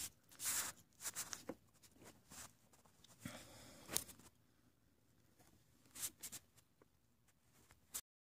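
Faint, scattered rustling and clicking handling noise in short bursts a second or so apart, with near silence between.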